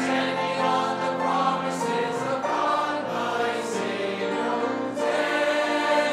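A church congregation singing a hymn together, with a brief break for breath at the very start, then held, sustained notes.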